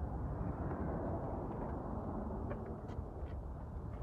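A steady low rumbling noise, with a few faint clicks in the second half.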